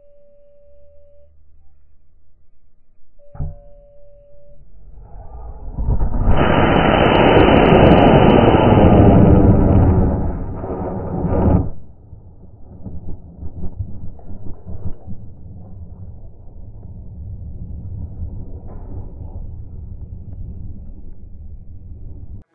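Cesaroni M2250 high-power rocket motor igniting at liftoff: two short beeps and a click, then a loud roar lasting about six seconds that cuts off suddenly, followed by lower rumbling.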